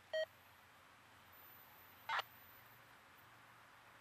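A single short electronic beep, then about two seconds later a brief scratchy chirp, over faint steady background hiss.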